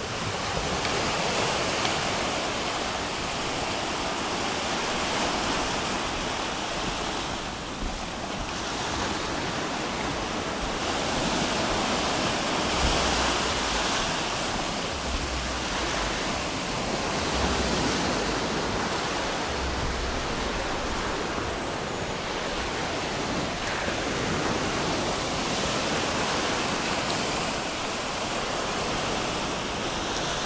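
Small sea waves breaking and washing up on a sandy shore. The steady hiss of surf swells and eases in slow waves.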